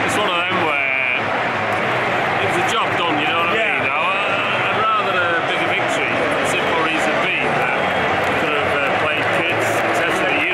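Speech: men talking close to the microphone, with a steady background of other voices.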